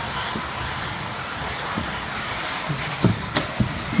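A pack of radio-controlled 4x4 buggies racing around a track, giving a steady mixed whirr of motors and tyres, with a few sharp knocks near the end.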